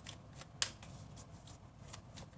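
A deck of tarot cards being shuffled by hand: a quick run of card flicks and rustles, with one sharper snap about half a second in.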